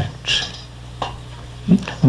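A pause in a man's talk over a microphone: a steady low electrical hum, a short breathy hiss early on, a faint click about a second in, and a brief voiced sound shortly before speech resumes.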